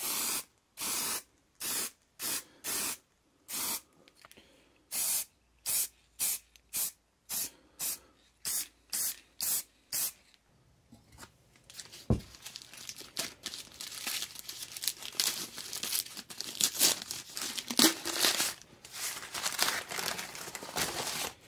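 Aerosol spray-paint can sprayed in many short hisses, about sixteen over the first ten seconds. Then masking paper and tape being torn and crumpled off a brass tank, with a single thump about twelve seconds in.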